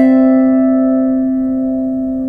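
Wooden lyre harp: a chord of several plucked strings struck once, then left to ring and slowly fade.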